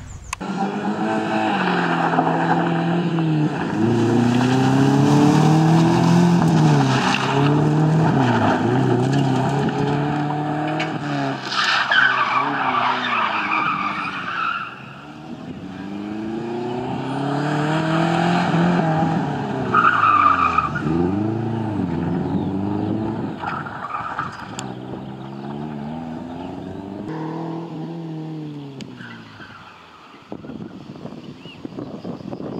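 Subaru Impreza rally car's flat-four boxer engine revving hard, its pitch climbing and falling again and again as it accelerates, changes gear and lifts off through tight turns. There are bursts of tyre skidding on the loose, dusty surface, loudest about twelve and twenty seconds in.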